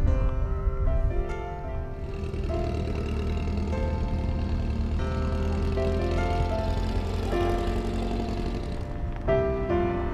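Background music with held notes. From about two seconds in until near the end, a dune buggy's engine is heard running underneath it.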